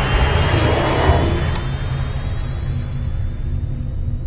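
Cinematic logo-intro sound design. A deep, steady rumble runs under a noisy wash that dies away over the first couple of seconds, while a thin high tone slowly rises in pitch.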